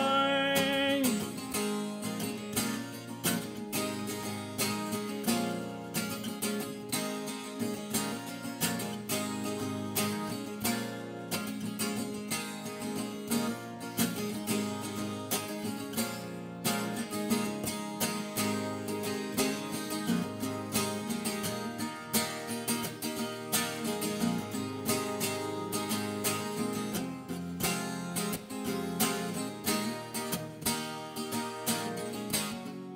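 Solo acoustic guitar played live in an instrumental break, a steady run of strokes over held chords. A held sung note fades out about a second in.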